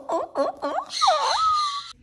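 A comedic sound effect: a quick run of high squeaky chirping cries, about four a second, then a single sliding tone that dips and rises again over a hiss near the end.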